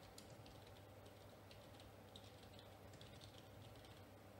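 Faint typing on a computer keyboard: a quick, irregular run of keystrokes over a low steady hum.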